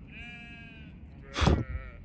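Sheep bleating twice: a wavering bleat in the first second, then a louder, harsher bleat about a second and a half in that opens with a sudden loud burst.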